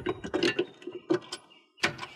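A string of clicks and knocks as an air-conditioner disconnect pull-out block is handled and plugged in, with one sharp knock near the end.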